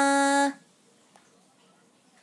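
A woman singing without accompaniment, holding one steady note that stops about half a second in, followed by near silence.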